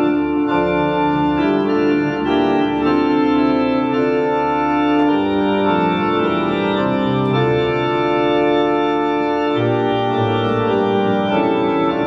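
Two-manual electronic organ playing slow sustained chords, each held for a second or so before moving to the next, over a moving bass line.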